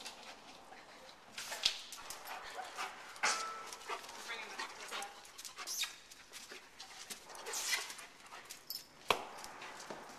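A search dog nosing through cardboard boxes and tyre racks: a string of short knocks, bumps and rustles as it pushes into the boxes, with a brief whine a little over three seconds in and a sharp knock near the end.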